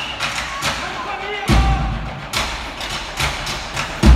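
Live ensemble music with percussion: sharp taps in a steady beat of about two or three a second, and one deep drum hit about one and a half seconds in.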